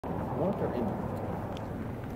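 Steady low vehicle rumble on a street, with faint voices in the background.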